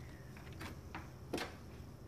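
A few faint clicks from hand wire strippers working on thin insulated wires, with one sharper snip about a second and a half in.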